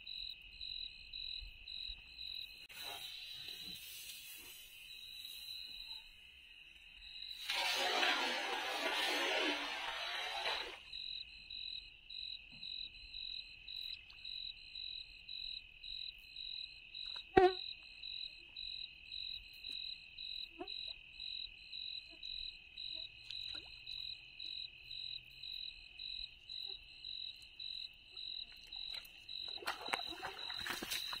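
Crickets chirping at night in a steady pulsing rhythm, about two pulses a second, at two high pitches. About eight seconds in, a loud burst of noise covers them for about three seconds, and past the midpoint there is a single sharp knock.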